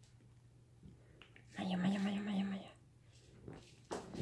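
A person's voice: one drawn-out vocal sound held at a steady, low pitch for about a second, midway through.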